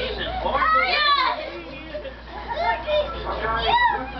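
Young children's high-pitched shouts and wordless cries while play-wrestling, loudest about a second in and again near the end.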